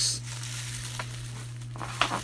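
A shipping box being handled and opened: a short rustle of packaging at the start, then a faint click about a second in.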